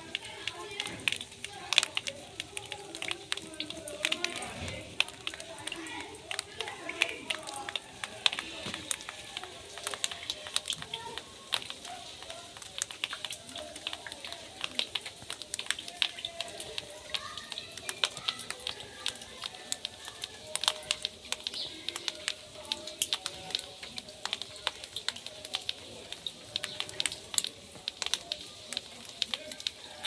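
Small hailstones falling and striking a woven plastic mat and bare ground: many irregular sharp ticks, some louder than others.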